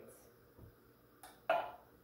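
A short wordless sound from a woman's voice about one and a half seconds in, just after a faint click.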